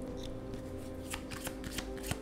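Tarot cards being shuffled and handled, a quick, irregular run of card clicks and flicks starting about a second in.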